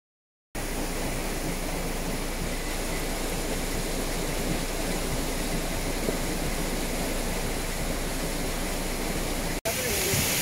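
Floodwater rushing across a road in a torrent: a steady, even rushing noise that starts suddenly about half a second in and breaks off for an instant near the end.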